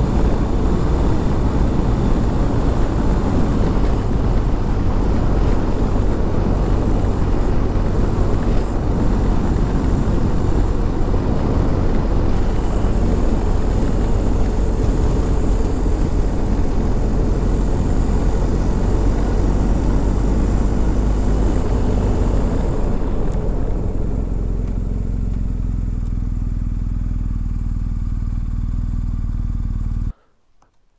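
BMW R1250 GS Adventure's boxer-twin engine running under way, with wind and road noise over it. About three-quarters of the way through it quietens and steadies as the bike slows.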